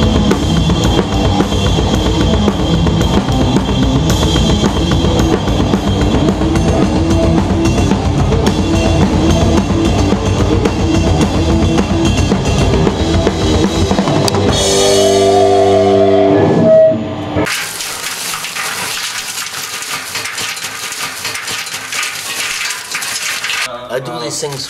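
Full drum kit played hard and fast: kick drum, snare, toms and cymbals. About fourteen seconds in, the drumming gives way to a held pitched ringing tone for about three seconds. That tone cuts off suddenly into a quieter, steady rustling noise.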